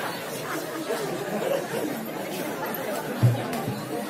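Several voices chattering over one another, with music underneath and a short low thump about three seconds in.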